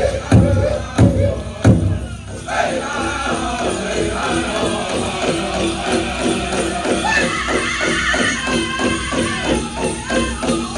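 Powwow drum group playing a song: a large hand drum struck with heavy beats about every 0.7 s, then from about two and a half seconds a faster steady beat under high-pitched singing.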